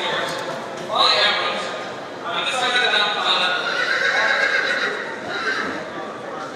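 Horse whinnying in a sale ring: a short loud call about a second in, then a longer, wavering call from about two seconds in that fades near the end.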